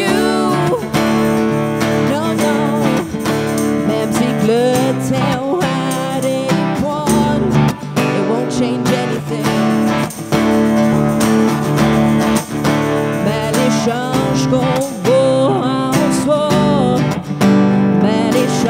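Live band playing a song: strummed acoustic guitar and electric guitar under lead and backing vocals, with a tambourine keeping the beat.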